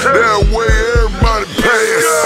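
Trap hip hop music: a rapped vocal line over deep bass hits that land several times.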